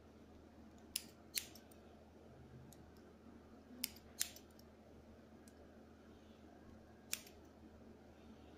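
Hairdressing scissors cutting short hair, five sharp snips: two quick pairs and then a single snip near the end.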